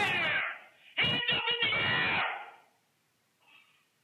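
Shouting on police body-camera audio: a man yelling, in two loud bursts, the second running from about one to two seconds in.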